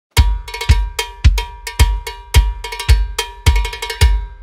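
A percussion-only song intro starting out of silence: a bass drum beating about twice a second, with a ringing cowbell and lighter drum clicks between the beats.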